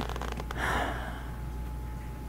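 A woman's short, sharp in-breath close to the microphone, about half a second in, just after a quick run of small clicks, over a low steady hum.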